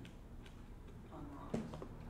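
A few short clicks and taps over quiet room tone: faint ticks early and mid-way, then a sharper tap about one and a half seconds in, followed by another small click.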